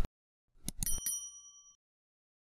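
Subscribe-button sound effect: a few quick clicks followed by a bright bell ding that rings for about a second and fades, matching the animated subscribe button and notification bell.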